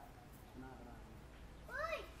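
A monkey's short coo call near the end, a single pitched cry that rises and then falls, heard over faint background voices.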